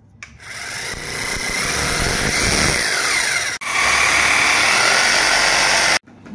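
Electric drill boring into a wall to mount a shelf. It runs hard for about three seconds, cuts out for an instant, then runs steadily again.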